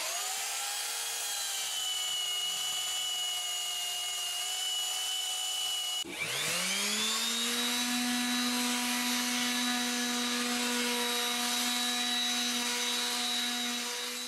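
Small handheld electric power tool running against a repaired wooden rafter: its motor whines steadily after spinning up, cuts out briefly about six seconds in, then spins up again and runs at a lower pitch.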